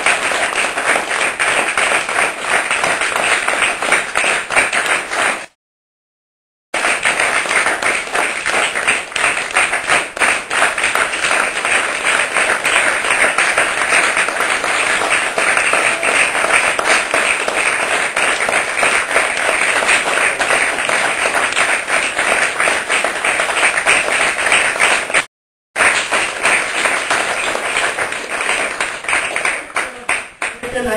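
Audience applauding: a steady, dense patter of many hands clapping. It is cut off twice by brief silent gaps, once about six seconds in and once, very briefly, about 25 seconds in.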